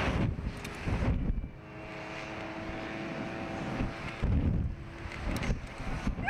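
Wind buffeting the microphone in repeated gusts as the Slingshot reverse-bungee capsule swings and spins through the air, with a faint steady hum under it from about the middle on.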